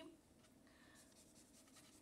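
Faint strokes of a marker tip on paper, otherwise near silence.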